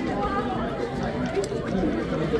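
Indistinct chatter of several spectators talking at once, no words standing out.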